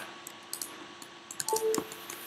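A few faint computer keyboard clicks, clustered in the second half, with a brief low hum about one and a half seconds in.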